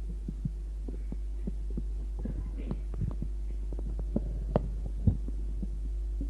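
Steady low electrical hum from an old tape recording, with scattered soft knocks and clicks in the room. The loudest knocks come about four and a half and five seconds in.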